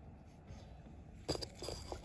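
Quiet handling noise: a single sharp click about a second and a half in, followed by a few faint ticks.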